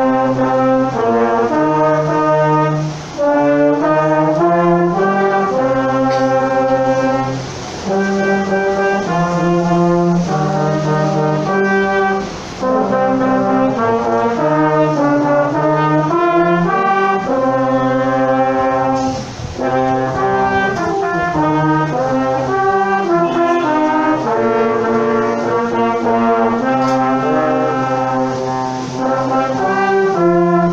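Brass quintet of trumpets, trombone and tuba playing an ensemble piece: sustained chords and a moving bass line, in phrases broken by a few brief pauses.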